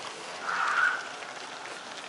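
Steady outdoor background hiss, with a brief soft rustle about half a second in.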